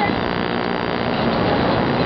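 Steady rushing outdoor noise on a skyscraper's open observation deck: wind with the distant hum of the city far below.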